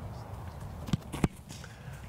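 A football kickoff: a quick step, then the sharp smack of the kicker's foot striking the ball, the loudest sound, about a second and a quarter in. A solid, well-struck kick.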